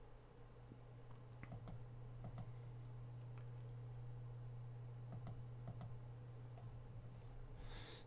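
Faint, scattered clicks of a computer mouse and keyboard being worked, over a steady low hum.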